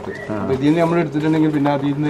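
Speech only: a man talking, with a drawn-out, steady-pitched syllable in the second half.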